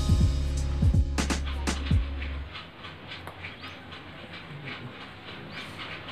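Background music or an edited-in sound effect with a heavy bass and several falling pitch slides, cutting to a much quieter stretch with faint regular ticking after about two and a half seconds.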